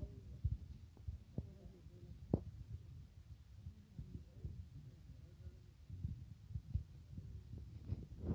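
Faint, irregular low thumps and a few sharper clicks of a handheld phone being handled while it films, with faint voices in the background.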